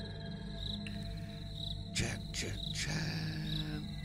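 Background ambient music bed: a steady low drone with cricket-like high chirps repeating at a regular pace, a little under once a second, and a couple of swooping sweeps around the middle.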